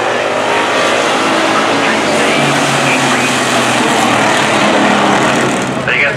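Street stock race cars' engines running around the oval track, a loud, steady mix of engine noise with one engine note holding steady through the middle.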